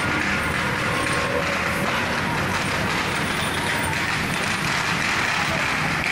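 Steady din of a street procession: a mix of crowd voices and city traffic noise, with no distinct drum beats or bangs.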